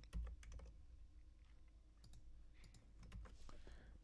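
Faint computer keyboard keystrokes: a scattering of separate key clicks as a password is entered into a terminal command.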